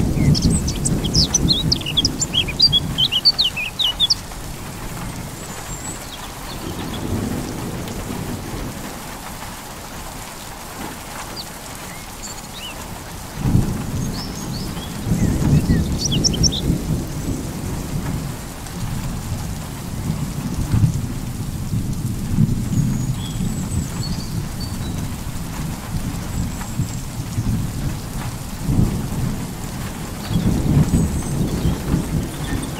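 Thunder rolling over steady rain: one rumble at the start that fades after about four seconds, and another that breaks about halfway and rolls on. Small birds chirp in quick bursts near the start and again briefly about halfway.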